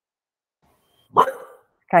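A dog barking once, a sudden single bark about a second in.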